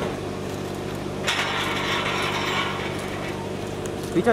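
Car engine idling steadily close by. A hiss rises over it about a second in and lasts about two seconds.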